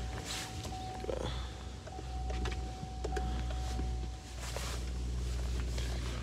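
A 6.6-litre Duramax V8 turbo-diesel idling steadily, heard from inside the cab. A thin steady whine runs over it and stops about four seconds in, and there are a few light clicks.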